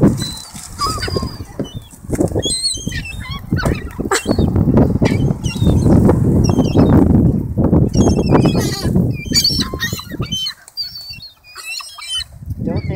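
A flock of gulls and rock pigeons: gulls give short, high squealing calls again and again over the rush of many wings flapping as birds take off and land. The sound drops away briefly near the end.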